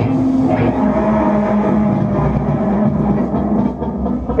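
Loud, low distorted drone from electric guitar and bass amplifiers holding a note, after the drums and cymbals stop.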